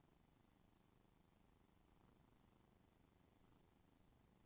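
Near silence: a faint, steady low background noise.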